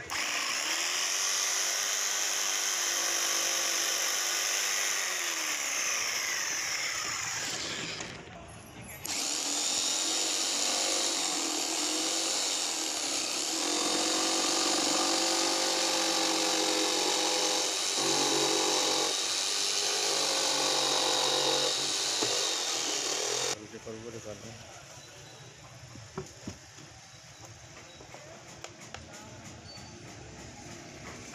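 Bosch jigsaw cutting fibreboard, its motor pitch sagging and recovering as the blade loads in the cut. It stops briefly about eight seconds in, runs again, and cuts off a few seconds before the end, leaving a few light clicks.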